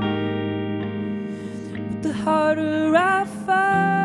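Slow indie-folk music from a hollowbody electric guitar and a Hohner Pianet electric piano, run through delay and reverb effects: held chords ringing on. A note slides upward about two to three seconds in, then a new sustained chord settles in near the end.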